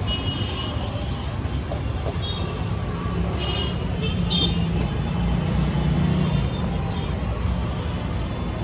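Street traffic rumble, with a motor vehicle's engine running close by. Its hum is loudest about three to six and a half seconds in.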